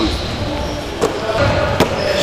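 Basketball bouncing twice on a wooden gym floor: two sharp thuds under a second apart.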